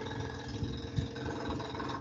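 A steady machine hum with several held tones in it, running evenly, with a faint tap or two.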